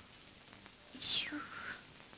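A person's short breathy whisper about a second in, its hiss sliding downward; otherwise faint room tone.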